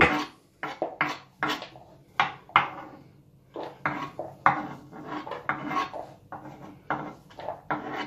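A spoon scraping diced onion across a wooden cutting board and knocking it off into a plastic container, in short irregular scrapes and taps about two a second.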